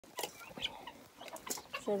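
Poultry in a pen: scattered short, high peeps and soft clucks from chickens and guinea fowl, with a few light clicks of pecking or scratching in the dirt.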